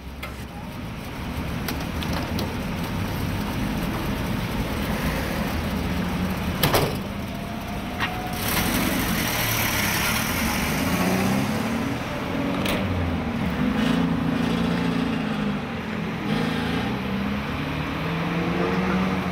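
Minibus engine running and then pulling away from the stop, its pitch rising and falling as it drives off, over steady city street traffic. A sharp knock comes about seven seconds in.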